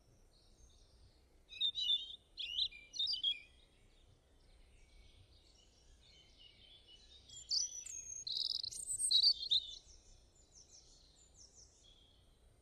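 Small birds chirping and twittering: a short burst of quick chirps near the start, then a longer, louder run of high chirps and trills in the second half.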